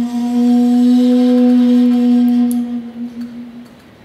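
Shakuhachi music: the bamboo flute holds one long low note with a breathy edge, then fades out over the last second or so.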